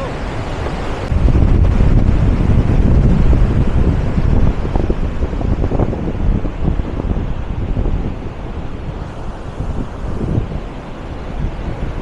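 Wind buffeting the microphone, heaviest in the first few seconds, over the steady rush of floodwater pouring through a concrete dam spillway.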